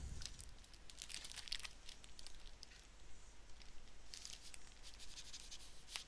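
Faint rustling and crinkling of paper as a sheet of toner transfer paper is handled and drawn from its packet, in short scattered rustles during the first two seconds and again about four seconds in.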